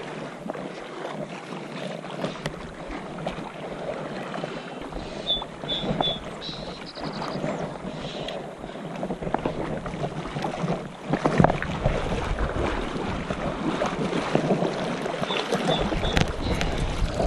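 Shallow river current rushing and splashing close to a wading angler, with wind buffeting the microphone, heavier in the second half.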